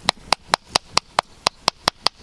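A hand-held rock pounding a yucca leaf against a flat rock in quick, even sharp knocks, about four or five a second. The leaf is being crushed to release its soapy saponins.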